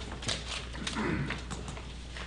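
Performers making mouth sounds: several sharp tongue clicks and a short voiced noise about a second in, over a steady low hum.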